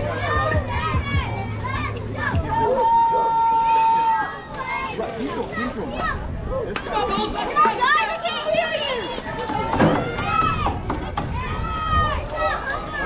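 Overlapping shouts and chatter of children and adults at a youth baseball game, with one long held call about three seconds in.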